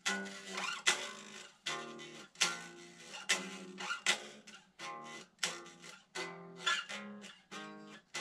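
Electric guitar strumming a chord progression, one chord roughly every second, each struck sharply and left to ring and fade: a common cadence being played through.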